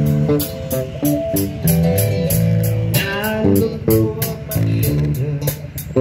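A small live band playing: acoustic guitar and bass guitar over a steady, high ticking beat about three times a second.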